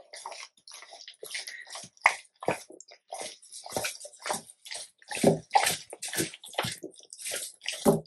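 Yellow Labrador retriever chewing, biting and licking a block of raw beef and chicken: wet mouth sounds in irregular bursts, a few a second.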